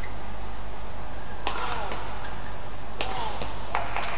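Badminton rally: two sharp racket strikes on the shuttlecock about a second and a half apart, each followed by short squeaks of shoes on the court mat, over a steady arena hum. A lighter tap comes shortly before the end.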